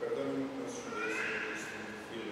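Low voices speaking, with a higher, wavering voice-like sound about a second in that lasts well under a second.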